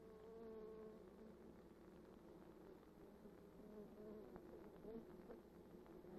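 Faint, steady buzzing of honeybees on the comb, heard as a soft, slightly wavering hum.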